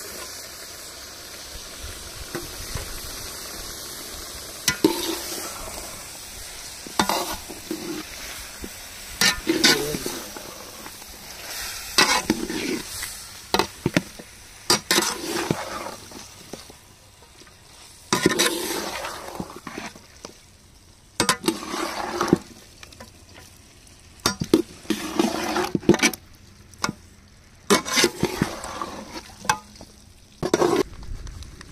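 A metal spatula stirring and scraping a large aluminium pot of chicken feet frying with tomatoes and onions. After a steady sizzle in the first few seconds, the scraping clatter comes in irregular strokes every second or two over the sizzle.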